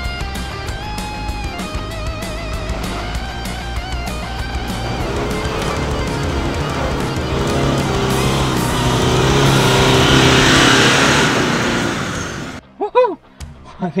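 Background music with electric guitar, laid over a Mitsubishi Triton ute's engine working hard in low range up a steep dirt climb. The engine grows louder as the vehicle nears, is loudest about ten seconds in, and cuts off abruptly near the end.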